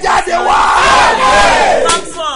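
A man's loud, drawn-out shouted cry that rises and then falls in pitch, cutting off sharply near the end.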